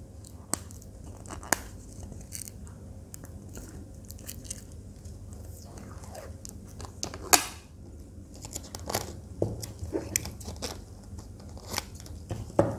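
Clear packing tape being handled and pulled off its roll: scattered sharp clicks and short crackling peels, with a louder snap about seven seconds in.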